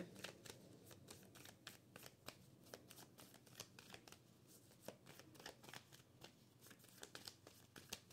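Faint, irregular flicking and clicking of tarot cards being shuffled and handled.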